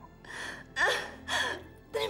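A woman crying, with three short gasping sobs one after another.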